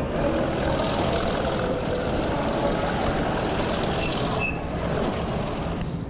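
A train running: a steady rumble, with a brief high squeal about four and a half seconds in, fading out at the end.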